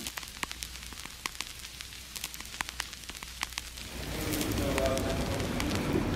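Faint scattered clicks and crackles for about four seconds, then the steady hum of a large indoor hall with distant voices.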